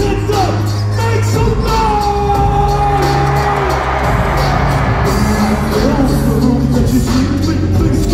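Loud live horrorcore rap music over a concert PA, heard from within the crowd: a steady heavy bass line and drum hits, with a long held note about two seconds in.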